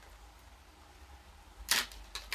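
A face mask and its packaging being handled by hand: mostly faint rustling, then one short, sharp crackle near the end.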